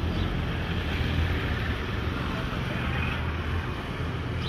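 Wind buffeting a handheld camera's microphone: a steady low rumble with a hiss over it.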